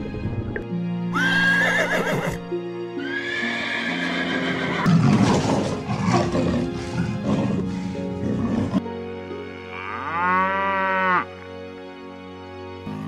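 Background music with animal calls laid over it: a high-pitched call about a second in, another longer one from about three to five seconds, and an arching, rising-then-falling call near the end.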